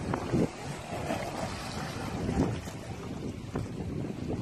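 Small sea waves washing against a rocky shore, with a light breeze buffeting the microphone as a low rumble.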